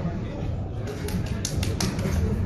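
Sports-hall background: a low murmur of voices and hall rumble, with a quick run of about five short, sharp clicks about halfway through.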